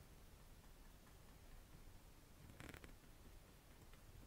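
Near silence: quiet room tone with a faint low hum, broken once about two and a half seconds in by a short scratchy stroke of a small foliage brush flicking paint across canvas.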